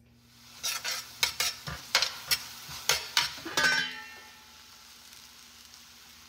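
Leeks and garlic sizzling in olive oil in a stainless steel pan, with a utensil stirring and knocking against the pan in a run of sharp clacks for about three seconds. After that only a quieter, steady hiss remains.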